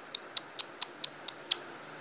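A quick run of light clicks, about four a second, stopping about one and a half seconds in: pretend chewing as a Barbie doll is fed a candy in play.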